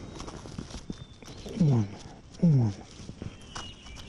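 Two short, low vocal sounds, each falling in pitch, about a second apart near the middle. Faint knocks and rustles come between them.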